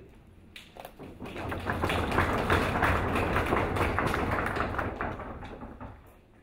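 Audience applauding. The clapping starts about half a second in, swells over the next second or two and dies away near the end.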